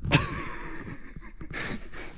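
A man's laugh trailing off into quiet breathing, with a short breathy exhale near the end.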